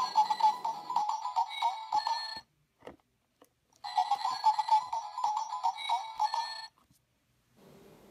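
Talking Dipsy Teletubbies toy playing two short recorded clips through its small built-in speaker, with a pause of about a second and a half between them. The sound is thin and tinny, like a ringtone.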